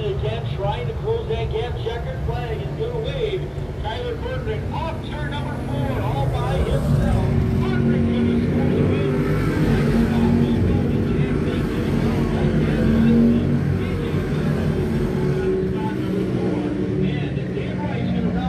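Racing car engines running around a dirt oval, with a car growing louder and passing from about six seconds in. People's voices are heard over the engines in the first few seconds.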